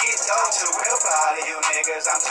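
Hip-hop track playing, a male rapper's vocals delivered over the beat.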